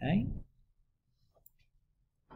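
A brief voiced sound from a person, under half a second long, at the very start. After it come a few faint ticks of a stylus tapping and writing on a tablet screen.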